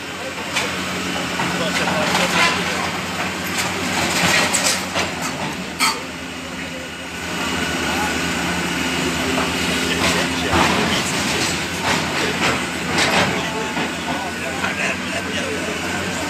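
Tracked excavator demolishing a building: its engine hums steadily while sharp cracks and crunches of breaking masonry and rubble come every few seconds.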